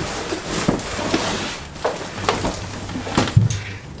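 A person climbing into a pipe cot, a bunk stretched on a tubular frame, in a small boat cabin: clothing rustling, with scattered knocks and bumps against the frame and a louder thump near the end.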